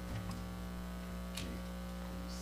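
Steady low electrical mains hum, with a faint click about one and a half seconds in.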